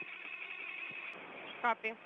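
Steady radio-channel hiss with a faint low hum on an open space-to-ground communications link, with a brief word of speech breaking in near the end.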